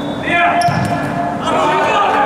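A futsal ball kicked hard across an echoing indoor sports hall, with short thuds of the ball, under players' shouting.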